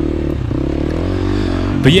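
KTM 350 XC-F dirt bike's single-cylinder four-stroke engine running at low revs, its pitch wavering slightly with the throttle.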